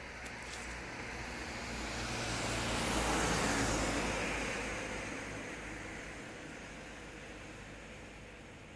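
A road vehicle passing by, growing louder to a peak about three seconds in and then fading away.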